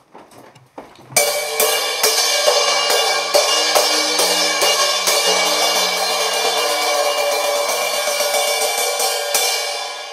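A cymbal on a stand struck hard and repeatedly with a drumstick, about two to three hits a second. It starts suddenly about a second in and keeps up a continuous ringing wash, easing off near the end.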